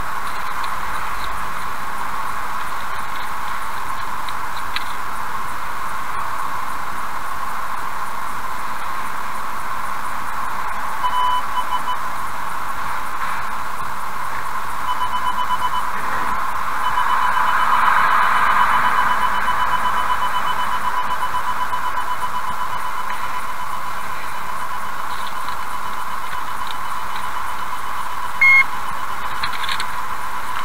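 Electronic beeping over a steady hiss: two short groups of beeps, then a rapid, even run of beeps lasting about twelve seconds, and one louder single beep near the end.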